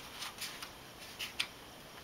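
Pages of a paperback picture book being turned by hand: several short, soft paper rustles and flicks.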